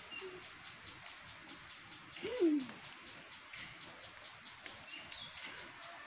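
Faint high bird chirps over a steady background hiss. A little past two seconds in comes one louder, low call that falls in pitch over about half a second.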